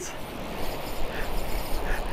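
Surf breaking on a beach, a steady even rush, with wind rumbling on the microphone.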